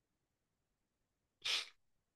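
Near silence, broken about one and a half seconds in by one short, breathy burst of air from a person, heard through a video-call microphone.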